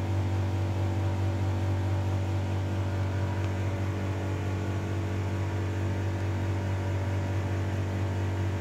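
Steady hum of a running pedestal electric fan: a constant low motor drone with fainter steady tones above it.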